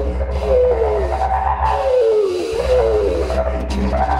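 Didgeridoo and contrabass flute improvising together: a low, steady didgeridoo drone that drops out briefly about halfway through, under higher wavering, sliding tones.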